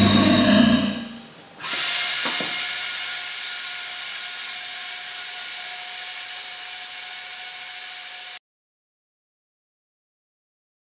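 Music fading out, then a sudden steady hiss with a faint held tone that slowly dies away and cuts off abruptly, leaving silence.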